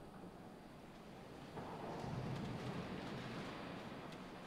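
Faint shuffling and rustling of people moving about in a large, echoing church, growing louder about one and a half seconds in, as the congregation settles for the readings.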